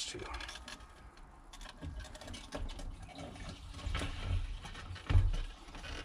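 Gasoline running and splashing out of the pulled low-pressure fuel pump assembly back into the fuel tank, with plastic parts knocking as the assembly is handled, and a dull thump about five seconds in.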